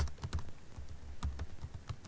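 Computer keyboard being typed on: a quick, uneven run of key clicks as a word and a new line are entered.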